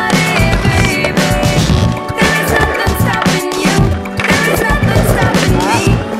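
A skateboard riding and grinding on concrete in a skatepark, heard under background music with a steady beat.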